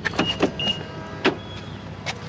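A BMW car door being opened by its handle: a run of sharp latch and handle clicks as the door unlatches and swings open.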